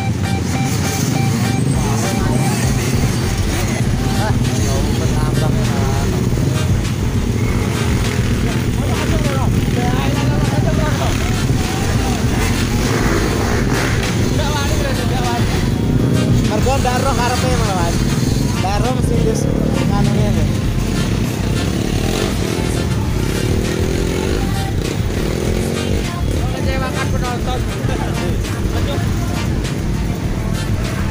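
Several off-road dirt-bike engines running and revving together as riders work their way up a steep muddy climb, with people's voices shouting over them.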